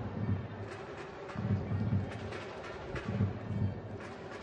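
Football-match ambience picked up by the pitch-side broadcast microphones: a steady noisy background with irregular low rumbling swells and a few faint knocks.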